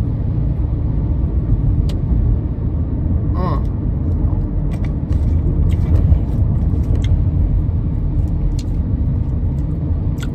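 Steady low rumble of a running car, heard from inside the cabin, with a short vocal sound about three and a half seconds in.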